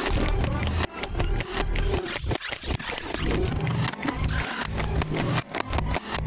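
Cartoon soundtrack: slapstick sound effects and wordless character noises, with many quick clicks and knocks over a pulsing low-pitched backing.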